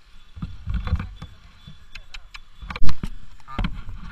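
Knocks and low rumble on the camera microphone as the camera is moved and handled, with a few sharp clicks and one very loud thump about three seconds in.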